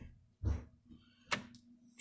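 Turkey baster tip poking into a biscuit on a metal baking sheet: a soft low thump about half a second in, then a single sharp click.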